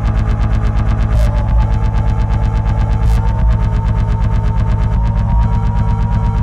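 Electronic techno track playing: a steady fast beat over sustained bass and a held synth tone, with a noisy texture and a couple of brief swishing noise hits.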